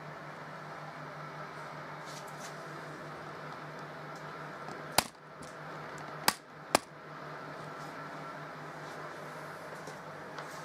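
Steady hum of a fan oven running at baking heat, with three sharp clicks or knocks about halfway through.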